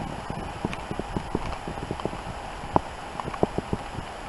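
Footsteps crunching through deep snow, a Siberian husky and its walker, in a quick, irregular run of soft crunches with one sharper crunch a little under three seconds in, over a steady hiss.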